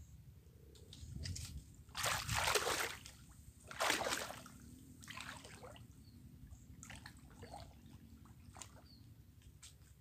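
Shallow water sloshing and splashing as a person wades knee-deep through it, in several bursts during the first half, the loudest about two and four seconds in, then only faint trickles and drips.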